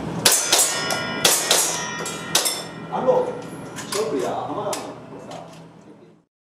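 A rapid string of airsoft pistol shots, each BB hitting a steel target plate with a ringing clang, about four hits a second for the first two and a half seconds. Fewer, fainter hits follow amid voices before the sound fades out.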